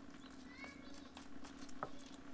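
Faint knife-and-hand work on a raw boar leg: scattered small clicks and wet handling sounds of the meat being cut, over a steady low hum, with a brief high chirp about half a second in.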